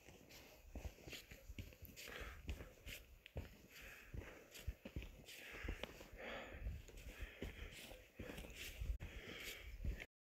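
Footsteps of a hiker walking through grass and turf on a mountain slope: a run of soft, irregular steps with low rumble on the phone's microphone.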